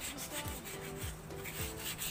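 Hands rubbing and scrubbing a greasy metal tractor rear-axle part in diesel in a metal pan, a continuous wet scraping of metal against metal, with a few faint steady tones of background music underneath.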